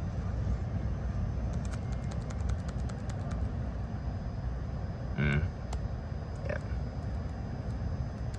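Steady low rumble of a running Daikin VRV heat pump system in heating mode, with a quick run of light clicks from scrolling through its monitoring data during the first few seconds.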